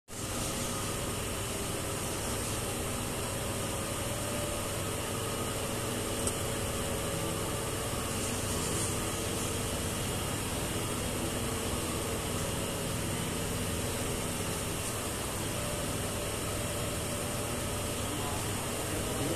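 Steady whirring hum of an electric gold melting furnace running hot, with one brief click about six seconds in.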